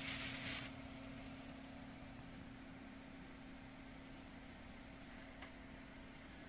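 Faint steady hum of a running desktop computer and its hard drive, with a brief rustle at the start as a tissue is set down over the drive.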